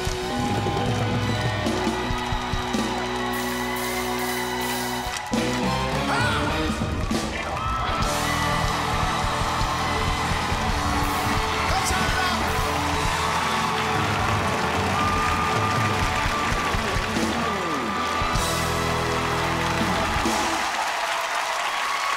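Live band with electric bass and drum kit playing a pop-rock song, with a voice singing over it and a crowd cheering along. Near the end the band stops and the crowd's clapping and cheering carry on.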